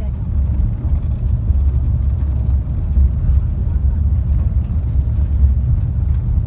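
Steady low road rumble of a tour coach travelling at speed, heard from inside the passenger cabin.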